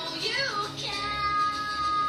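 Background music with a high female singing voice, which glides early and then holds one long note from about a second in.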